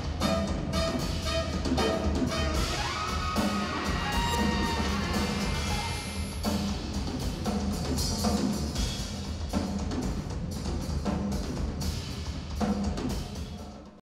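Jazz-rock band playing live, with drum kit, saxophone and trumpet over upright bass and a regular drum beat.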